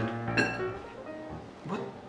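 Background music of plucked-string notes, with a short soft tap about half a second in as gummy candy is set down on a ceramic plate.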